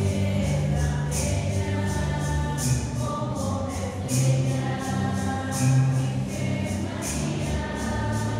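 Church music: several voices singing a hymn together over a bass line, with a steady beat.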